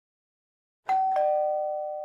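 Two-note 'ding-dong' doorbell chime: a higher note a little under a second in, then a lower note a moment later, both ringing on and slowly fading.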